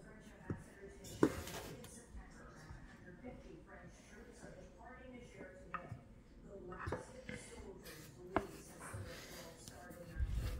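A wooden rolling pin being worked over cookie dough on a wooden pastry board, with a few sharp knocks, the clearest about a second in and near the end. Faint talk is heard in the background.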